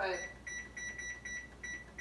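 Short high electronic beeps from an electric range's control panel, about three a second, as its timer is set for the squash to bake.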